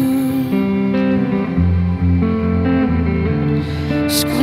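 Solo electric guitar playing sustained clean chords, with new chords and bass notes entering every half second or so in an instrumental passage between sung lines.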